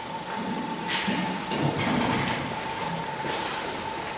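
Room noise: a steady hiss with a constant faint high tone, and a few soft indistinct low sounds in the first couple of seconds.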